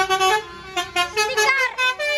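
Tour bus's "telolet" musical horn playing a quick melody of short, stepped notes, briefly pausing about half a second in.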